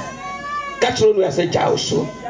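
A high-pitched, drawn-out wailing cry from a person's voice for almost a second, followed by fervent, broken vocalising.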